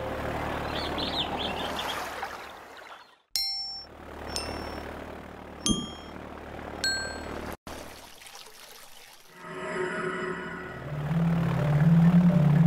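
Sound-designed film soundtrack. A rushing whoosh-like haze gives way to four bright, ringing dings about a second apart. Near the end, sustained tones swell into music.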